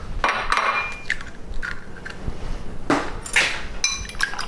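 An egg knocked on the rim of a ceramic bowl and cracked into it, with clinks of a fork against the bowl: a few separate taps, the loudest about three seconds in. Rapid clinking of a fork beating the eggs starts right at the end.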